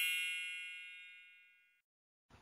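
A bright, metallic chime of several high tones ringing out and fading away over about a second and a half, as a logo sound effect.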